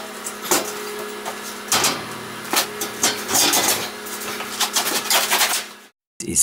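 A large 4 mm steel sheet being handled and slid onto the slatted steel bed of a CNC plasma cutter: repeated metal scrapes and clanks over a steady low hum. The sound cuts off suddenly near the end.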